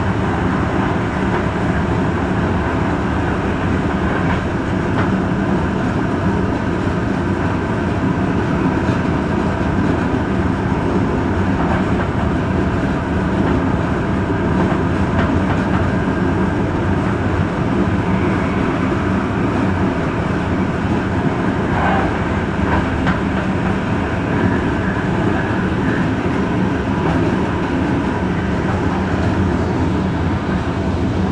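Steady running noise of an express passenger train at about 160 km/h, heard from inside the train: a constant rumble of wheels on rail with a low hum and a few faint clicks.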